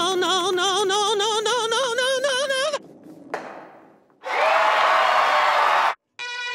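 A cartoon voice holds a long, drawn-out "Nooo" with a wavering, vibrato-like pitch, breaking off about three seconds in. About four seconds in comes a second loud, sustained cry with a hissy edge, which cuts off suddenly just before the end.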